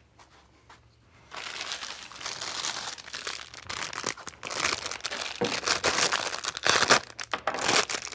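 Plastic packaging crinkling and rustling as it is handled and opened, starting about a second in and going on irregularly with many sharp crackles.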